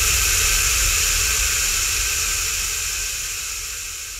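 Electronic white-noise wash with a low rumble beneath, left over after the dubstep beat cuts out, fading steadily away as the track ends.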